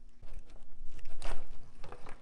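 Hand wire strippers clamping and pulling the insulation off an oven igniter lead: several short scraping sounds, the loudest just after a second in.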